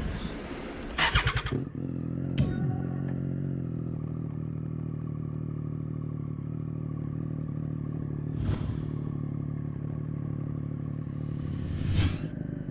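2015 Triumph Street Triple 675 Rx's inline three-cylinder engine, fitted with an SC-Project Conic exhaust, idling steadily at a standstill. For the first two seconds there are clicks and clatter from the bike being handled.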